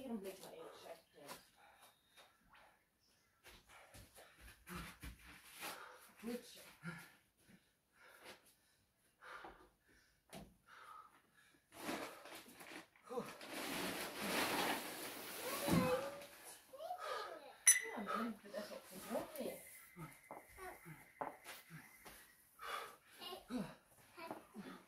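A man breathing hard and gasping from exertion, in short ragged breaths. About halfway through, a louder rush of noise lasts about two seconds.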